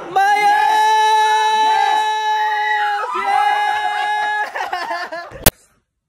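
A man screaming in celebration: one long held yell of about three seconds, then a second held yell of over a second, followed by shorter shouts. Near the end a single sharp click, after which the sound cuts off.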